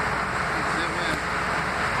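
A faint voice over a steady rushing background noise, with no clicks or knocks.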